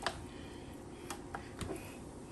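Hands rubbing butter over a raw turkey's skin in a foil roasting pan: quiet handling with a few faint clicks and taps.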